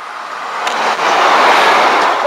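Class 153 single-car diesel unit running along the platform, its wheel and air noise a rushing sound that swells as it draws close.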